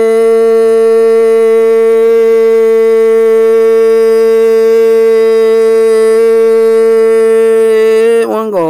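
A voice holding one long, steady sung note in Hmong kwv txhiaj sung poetry.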